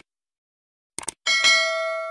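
Subscribe-button sound effect: two quick mouse clicks about a second in, then a notification bell chime that rings on and slowly fades.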